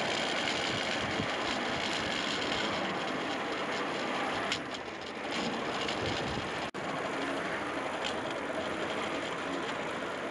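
Steel wheels of a hand-pushed rail trolley rolling along the railway track, a steady rumble and clatter with light clicks. The sound dips briefly about halfway through and cuts out for an instant a little later.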